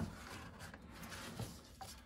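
Faint rubbing and handling noise of a Cordura nylon magazine pouch being pulled off a rifle's buttstock, with a light knock at the very start.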